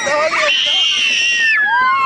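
Several children screaming together on a spinning amusement ride: long, high screams that start about half a second in and overlap, one voice sliding down in pitch near the end.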